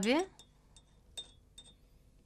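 A few faint clinks of a tea glass against its saucer, the clearest a little past a second in.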